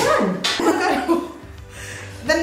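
Excited women's voices exclaiming and cooing, with one high voice falling steeply in pitch at the start.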